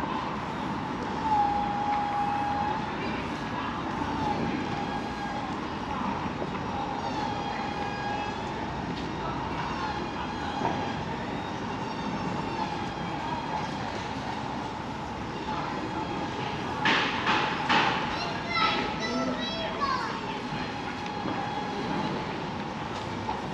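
Town-centre pedestrian street ambience: a steady wash of background noise with the voices of passers-by. Near the end comes a short cluster of sharp knocks and raised voices.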